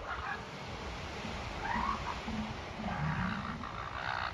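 Northern elephant seals calling: short cries just after the start, then longer, wavering calls from about halfway through.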